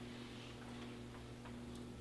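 Quiet room tone with a steady low electrical hum and a few faint ticks.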